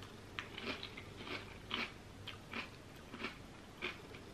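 A person chewing a mouthful of crunchy cornflake-style cereal in milk, with faint crunches about twice a second.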